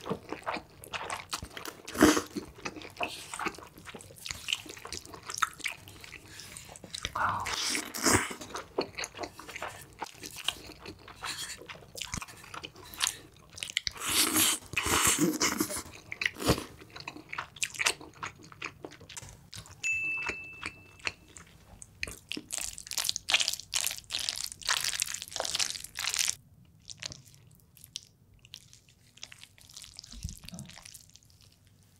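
Close-miked eating: long wet slurps of spicy cream fire noodles, with chewing in between. The slurps come in several bursts of a second or two, and the eating goes quieter near the end.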